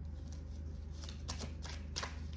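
A deck of tarot cards being shuffled by hand: a run of quick crisp card snaps and flicks, coming thicker in the second half.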